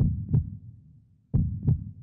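Heartbeat-style sound effect with deep thumps in a lub-dub rhythm: two double beats, the second pair about a second and a third after the first.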